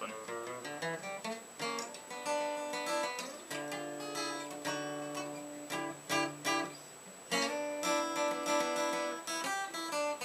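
Acoustic guitar played solo: picked notes and chords with sharp attacks every second or so, left to ring between them.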